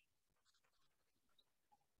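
Near silence: a pause between speech.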